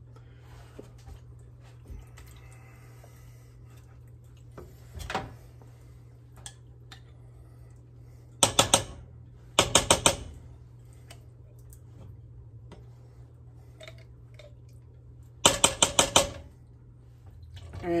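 Quick runs of sharp taps, three to five at a time, as a spatula is knocked against the rim of a cooking pot to shake off pesto scraped from the jar, with small scraping clicks between them.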